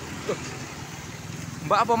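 Small motorcycles and motor scooters passing close by, their engines giving a steady low rumble. A voice calls out near the end.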